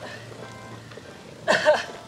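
A runner's short, loud, breathy groan with falling pitch, made as he pulls up exhausted right after a hard interval rep. Faint background music runs underneath.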